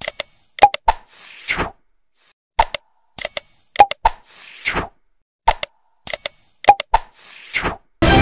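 Sound effects for an animated like-and-subscribe button: sharp mouse-click sounds, a short bright chime and a whoosh. The click, chime and whoosh group repeats three times, about every three seconds.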